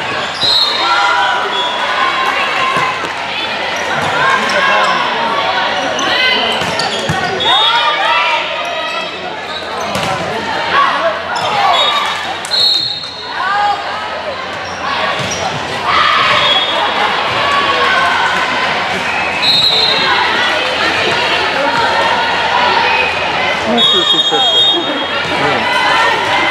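Sounds of an indoor volleyball rally in a gym: the ball being hit, sneakers squeaking on the court, and players and spectators calling out and cheering, all echoing in the large hall.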